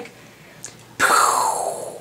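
A gunshot imitation: a sudden hissing burst about a second in that falls in pitch and fades, mimicking a loud, echoey gunshot heard in the night.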